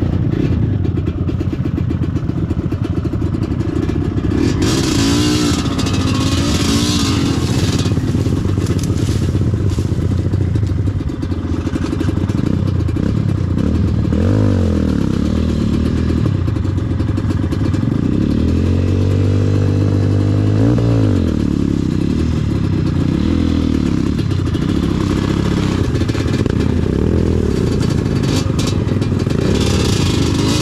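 Yamaha DT125 two-stroke single-cylinder dirt bike engine running at low speed, its note rising and falling with the throttle and revving up strongly about two-thirds of the way through before dropping back. Tall grass and cane stalks scrape and swish against the bike as it pushes through the undergrowth.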